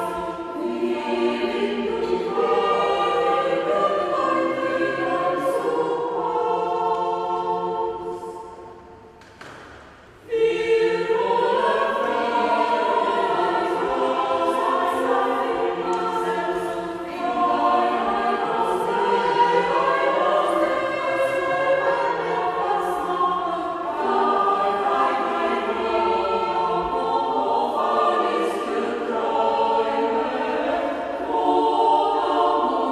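Mixed chamber choir of men's and women's voices singing unaccompanied under a conductor, with a brief quieter break about nine seconds in before the full choir comes back in.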